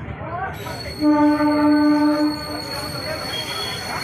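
Local electric train's horn sounding one steady blast about a second in, lasting about a second and a half, over the running rumble of the carriages. A thin high steady squeal from the wheels runs underneath.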